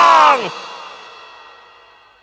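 A voice holding a long "oh" that slides downward in pitch, dropping away sharply about half a second in, followed by an echo that fades out over the next second and a half.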